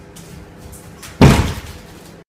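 A single loud slam about a second in, fading out within half a second, against quiet room noise.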